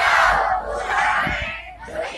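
A large group of schoolboys chanting together in unison, many voices blended into one, in two phrases of about a second each.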